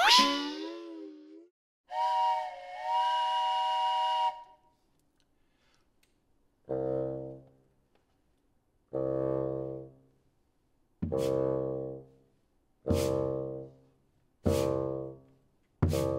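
A rising whoosh, then a steady train-whistle chord held for about two seconds. After a pause a bassoon plays repeated long low notes that come closer and closer together, like a train pulling away.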